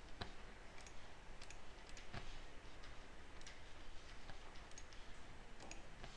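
Faint computer mouse clicks, scattered and irregularly spaced, over a low steady hiss.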